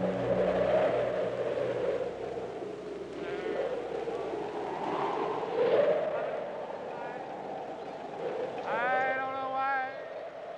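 Wind gusting, its pitch slowly rising and falling, with wailing, voice-like calls laid over it. The strongest call comes near the end: it rises in pitch and then holds for about a second.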